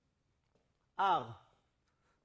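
A man's voice: near silence, then about a second in one short wordless vocal sound, falling in pitch and lasting about half a second.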